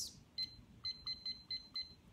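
Short, high electronic beeps from a device's keypad as its buttons are pressed: about seven beeps in just over a second, each starting with a faint key click.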